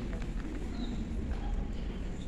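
Room tone of a large hall: a steady low hum with faint murmuring of people conferring and a few light knocks.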